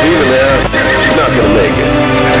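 A horse whinnying a few times in wavering calls, mixed over a pop song.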